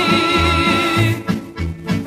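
Serbian folk song (narodna muzika) with band accompaniment: a female voice holds a note with vibrato that ends about a second in, over a bass line moving between two notes. The band plays on more quietly after the note ends.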